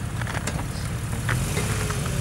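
Lifted first-generation Jeep Grand Cherokee's engine running at low revs as it creeps back in the snow, with scattered light clicks and a faint whine coming in near the end.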